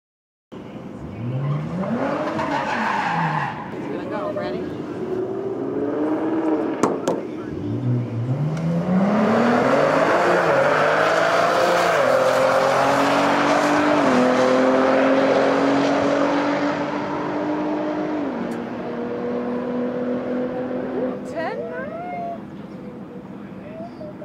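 2016 Cadillac ATS-V's twin-turbo 3.6-litre V6 making a full-throttle drag-strip pass. Early on the engine revs up and back down. About seven seconds in it launches, its pitch climbing in steps through the upshifts, then holding steadier and dropping as the car runs on down the track.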